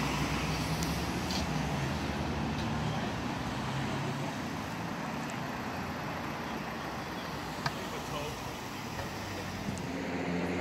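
Street traffic ambience: a steady hum of road noise, with a vehicle engine running low and steady for the first few seconds before fading away.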